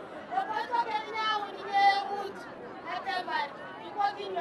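A woman speaking into a hand-held microphone in a local language, in a drawn-out, chant-like delivery with a few held notes, over a background of crowd chatter.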